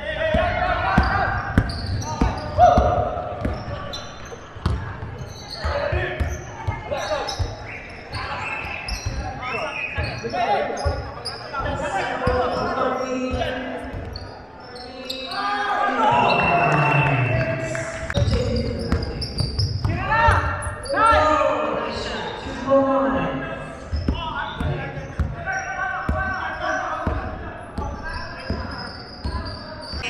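Basketball game on a wooden sports-hall court: a ball bouncing, with knocks of play and indistinct players' calls echoing in a large hall, and voices louder about halfway through.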